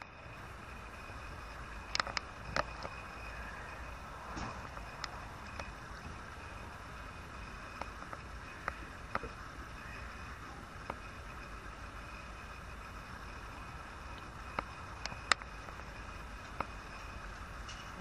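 Quiet outdoor background: a steady low rumble with scattered short, sharp ticks and faint chirps every second or two.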